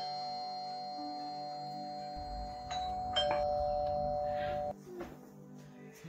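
Two-tone doorbell chime: a ding-dong rings on into the start, and a second ding-dong, high then lower, sounds about three seconds in. Its held tones cut off suddenly shortly before the end.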